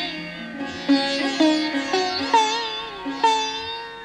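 Instrumental passage of South Asian semi-classical music: a plucked string instrument plays a melodic phrase of four or five strong plucks, each note ringing on and bending in pitch, then settles into one held, fading note near the end.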